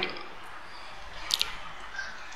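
Low, steady room hiss in a pause between speech, broken about one and a half seconds in by one brief, sharp click-like sound.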